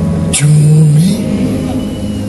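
Live band music in a ballad: a held chord breaks off about half a second in with a sharp hiss, and a low held note slides upward in pitch before settling.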